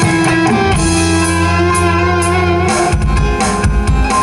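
Loud amplified band music from an obrog procession cart's loudspeakers: guitar over a steady bass line and drums, with the bass changing about three seconds in.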